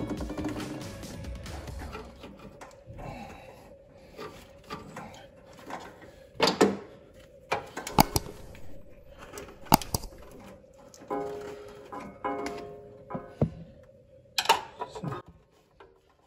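Low background music with a steady held note, over a few sharp clicks and knocks from hand tools and pliers working on the engine-bay coolant hoses.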